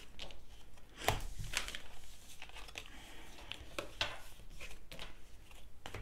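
Manara tarot cards being picked up off a wooden tabletop and handled: a series of short slaps, slides and clicks of card stock, the sharpest about a second in and again around four seconds.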